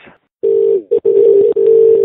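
Telephone dial tone heard down a phone line, a steady low two-note hum that starts about half a second in, breaks briefly, then carries on.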